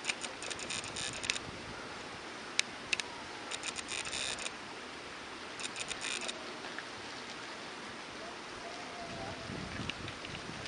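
Autofocus motor of a Nikkor 18-105 mm VR lens, picked up by the Nikon D3100's built-in microphone. It gives three bursts of rapid clicking chatter, near the start, around four seconds and around six seconds, with a couple of single clicks between. All of it sits over a steady outdoor hiss.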